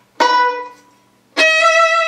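Violin: a loud pizzicato chord plucked a fraction of a second in, ringing and dying away, then about a second later a bowed (arco) note starting and held steadily. It shows the switch from pizzicato to arco carried in one impulse.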